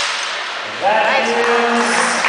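A man's voice shouts one long, loud call about a second in, the kind of call spotters, referees or teammates give during a bench press attempt, in a large, echoing gym.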